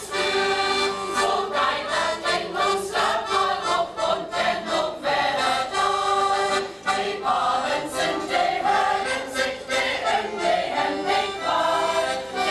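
Mixed choir of adults and children singing a Low German song in unison, with piano accordion accompaniment and a steady rhythmic beat.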